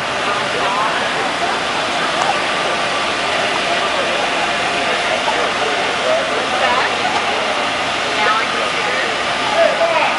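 A steady rushing noise with distant voices talking now and then.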